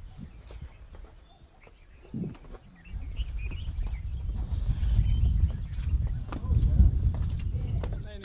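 Outdoor wind rumbling on the camera microphone, heaviest in the second half. Scattered light knocks fit footsteps on rock.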